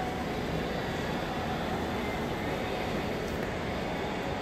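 Steady, even background noise with nothing standing out; the wooden pipe being handled is not played.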